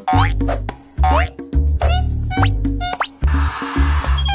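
Playful children's cartoon background music with a bass line pulsing about twice a second, overlaid with quick sliding pitch-glide sound effects, and a short hiss near the end.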